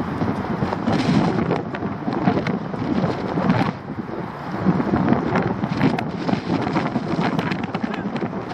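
Wind buffeting the camera microphone: a loud, uneven rumbling noise with scattered short clicks.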